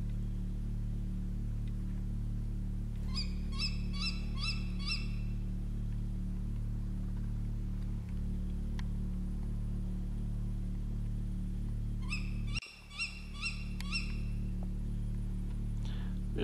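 An owl calling: a run of five short rising notes about half a second apart a few seconds in, and the same run again near the end, over a steady low hum.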